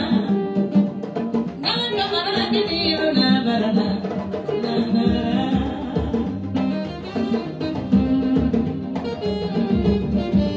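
A woman singing into a microphone over drums and percussion keeping a steady, fast dance beat.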